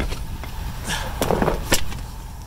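Footsteps and a few sharp knocks and scuffs as a cardboard hitch box is carried and set down on asphalt, over a low steady rumble.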